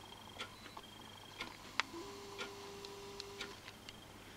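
Quiet room tone with a few faint, irregular light clicks, one sharper than the rest near the middle, and a soft steady hum lasting about a second and a half after it.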